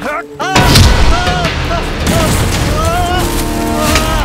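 Action-film soundtrack: a heavy boom hit about half a second in, followed by background music with arching pitched sounds and steady held notes.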